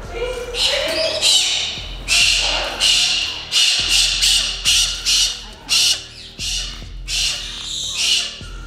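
Galah cockatoo screeching: a long string of about a dozen loud, harsh screeches, one or two a second.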